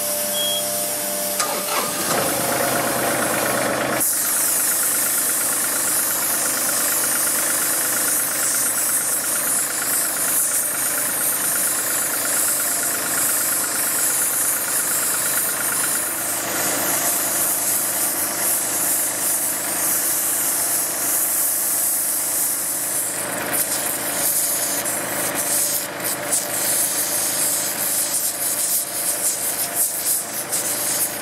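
John Deere 2038R compact tractor's diesel engine running steadily while the loader puts pressure on a twisted loader arm, with the hiss of an oxy-acetylene torch heating the steel.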